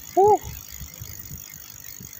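Bicycle ride heard through a phone mounted on the handlebar: low uneven rumble of wind and road vibration with light rattling. Near the start the rider gives one brief vocal exclamation, rising then falling in pitch, the loudest sound.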